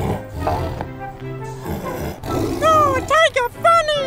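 A cartoon tiger's roar over light background music, followed near the end by a cartoon character laughing.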